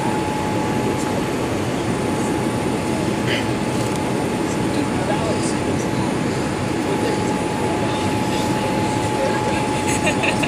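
Cabin noise inside a Boeing 787-8 airliner descending on approach: steady airflow and engine noise with a thin, steady whine running through it.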